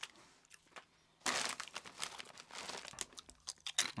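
A foil-lined Doritos bag crinkling as a hand reaches into it, with a burst of crinkling a little over a second in, then crisp crunching and chewing of a tortilla chip.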